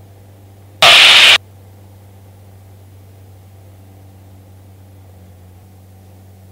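A short burst of radio static, about half a second long, about a second in, over a steady low hum on the aircraft's intercom and radio audio line.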